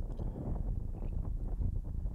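Wind buffeting the microphone of a bicycle-mounted action camera while riding at about 35 km/h: a steady low rumble.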